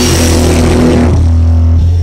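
Rock band's electric bass and guitar holding one loud chord that rings out, with the cymbal wash dying away after about a second.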